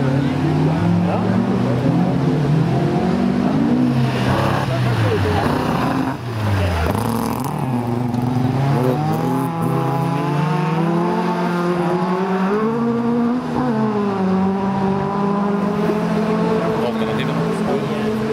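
Several rallycross race cars running hard through a hairpin, their engines revving, shifting and changing pitch as they brake and accelerate. About six to seven seconds in, an engine note falls deeply and then climbs again, after which the engines run more steadily at high revs.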